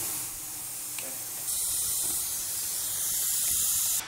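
Steady hiss of a compressed-air vacuum brake bleeder running while motorcycle brakes are bled. It gets louder about a second and a half in.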